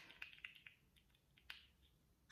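Near silence: room tone with a few faint clicks in the first second and one slightly sharper click about one and a half seconds in.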